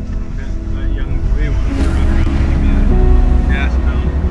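Steady low engine and road rumble inside the cabin of a moving car, with music playing from the car radio. A brief rustle comes near the middle.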